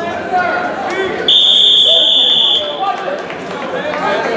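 An electronic scoreboard buzzer sounds once, a steady high-pitched tone starting about a second in and lasting just over a second, over the voices of a crowd in a gym.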